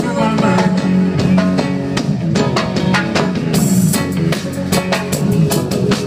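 Live reggae band playing loudly: a steady drum beat over a strong bass line, with guitar and keyboards, heard from within the crowd.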